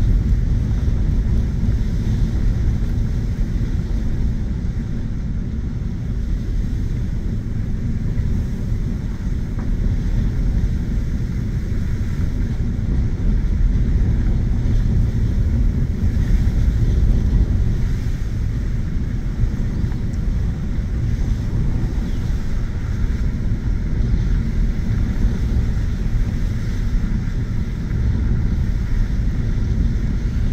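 Inside the cab of a Ford F-150 pickup rolling along a dirt road: a steady low rumble of tyres and engine.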